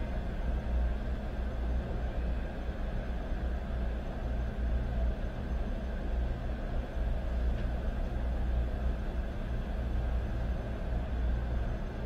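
A steady low rumble with a faint hiss over it, even throughout with no distinct events, like distant traffic or background hum.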